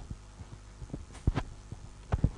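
Several soft, irregular thumps of a clip-on lapel microphone being handled, over a steady low electrical hum.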